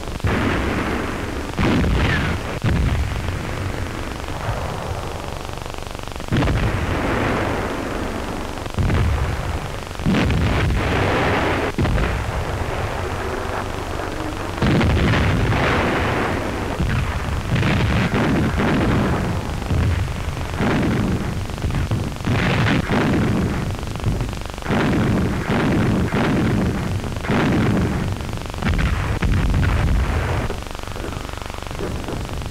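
Artillery fire with shells bursting, a long irregular series of heavy explosions about every one to two seconds, over the steady hiss of an old film soundtrack.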